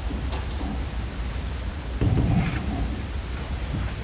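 Steady low rumble of meeting-room background noise picked up by the microphones, with a muffled low thump about halfway through.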